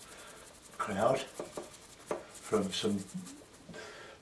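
A paintbrush scrubbing and mixing watercolour in a palette, a quick scratchy rubbing, with low half-spoken muttering over it about a second in and again near three seconds.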